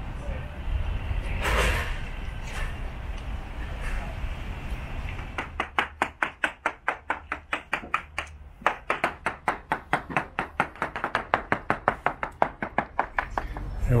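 A surveyor's plastic-headed sounding hammer tapping rapidly along the fibreglass hull of a Regal 33XO, about five sharp taps a second, with a short pause partway through. This is percussion sounding of the hull to find voids or delamination.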